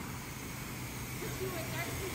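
Self-serve car wash high-pressure spray wand spraying water onto a car: a steady hiss with a low hum under it.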